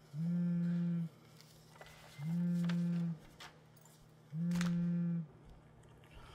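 Mobile phone vibrating with an incoming call: three steady low buzzes, each just under a second long, about two seconds apart.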